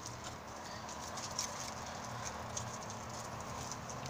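Handling noise: scattered light clicks and taps as a toy figure is held and moved about close to the microphone, over a faint steady hum.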